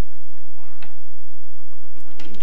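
Steady low electrical hum with a single faint click about a second in.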